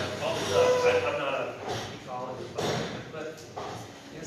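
People talking indistinctly in a large hall, with no clear words.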